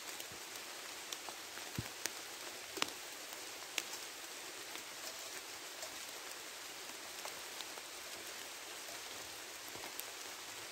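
Pouring rain falling through woodland as a steady hiss, with scattered sharper drop ticks close by, a few of them louder about two to four seconds in, and a soft low thump just before two seconds in.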